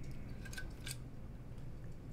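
Faint handling noise of a Flux Raider pistol chassis being turned in the hands, with two small clicks in the first second over low room tone.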